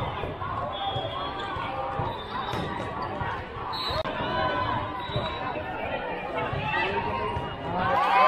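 Sneakers squeaking on a hardwood volleyball court and the ball being struck, over many voices of players and spectators, all echoing in a large hall.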